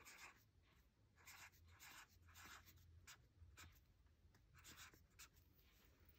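Green felt-tip marker writing on lined notepad paper: about ten short, faint strokes as a string of digits is written.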